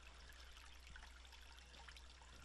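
Near silence with the faint, steady trickle of a shallow rocky stream.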